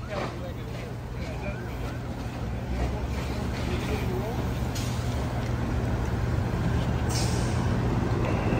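Steady low rumble of heavy diesel vehicles running, with a wash of noise that grows slowly louder, faint distant voices, and a short hiss about seven seconds in.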